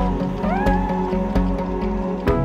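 A domestic cat meowing once, a short rising call about half a second in, over background music with a steady beat.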